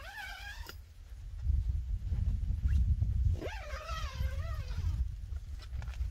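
Zipper on a pop-up privacy tent's door being pulled open, a buzzing rasp whose pitch rises and falls with the speed of the pull, heard twice: briefly at the start and again for about a second and a half past the middle. A low rumble runs under the second pull.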